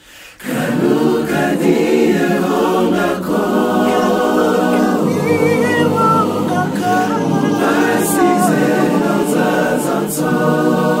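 Male vocal group singing a gospel song a cappella in close harmony, with a high lead voice ornamenting its line above the others. The singing comes in after a short break right at the start.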